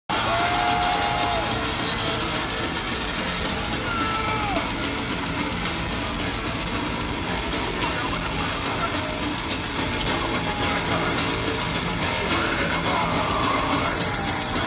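Heavy metal band playing live at concert volume, heard from the audience: a dense, steady wall of distorted guitars and drums.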